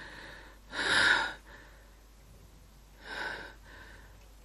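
A woman's laboured, gasping breaths: a loud one about a second in and a weaker one about three seconds in.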